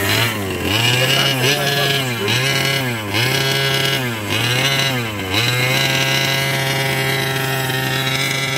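Small two-stroke engine of a 1/5-scale gas RC car running while parked, its pitch swinging up and down about five times at roughly one-second intervals, then settling to a steady run for the last few seconds.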